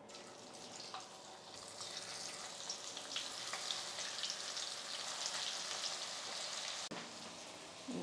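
Masala-coated bitter gourd slices sizzling in hot oil in a frying pan as they are dropped in one by one. The crackle swells after the first second or so as the pan fills, then holds steady.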